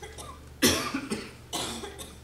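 A man coughing: a sharp cough a little past half a second in, followed by a softer one near the end.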